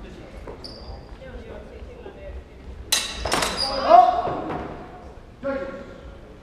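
Two sharp clashes of steel longsword blades about three seconds in, a third of a second apart, with a brief metallic ring. Right after comes a loud shout, the loudest moment, and a short call near the end.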